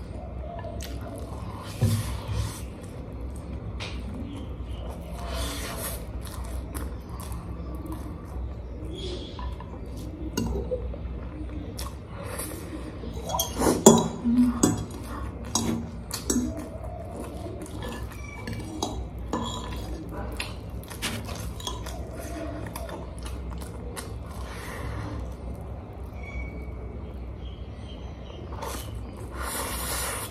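A fork tapping and scraping on a plate as spicy noodles are twirled up and eaten, with chewing. It comes as scattered short clicks and taps, loudest in a cluster about halfway through.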